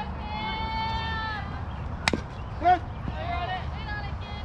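High-pitched young voices calling out at a softball game: one long held call, then a single sharp crack about two seconds in, followed at once by a short loud shout and more calling.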